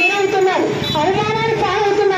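A high voice singing in long, drawn-out notes that bend from one pitch to the next, as in a folk-style song.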